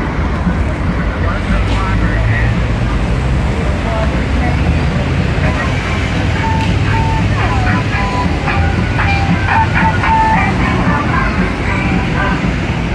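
Busy outdoor street ambience: a steady low rumble of road traffic under the indistinct voices of people talking nearby.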